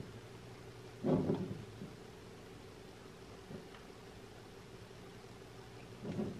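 Quiet handling of hook-up wires and battery leads, with one brief, louder rustle about a second in, over a steady low hum.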